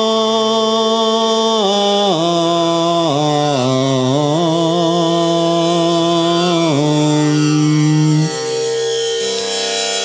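A man's voice slowly chanting a devotional mantra, holding long notes that bend and glide between pitches. The long held line ends about 8 seconds in, leaving a steadier, softer tone.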